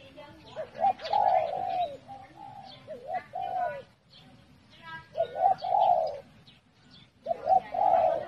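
A dove cooing in short repeated phrases, four bouts about two seconds apart, with thinner, higher-pitched calls in between.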